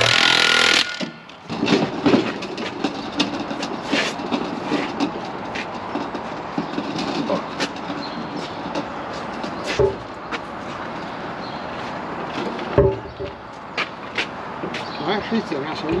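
Cordless impact wrench hammering on a tractor wheel's nuts, cutting off about a second in. After it comes a steady clattering background with scattered sharp clicks and knocks.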